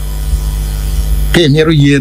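A steady electrical mains hum with a buzzy edge, loud and unbroken through a pause in the talking. A voice starts speaking over it about a second and a half in.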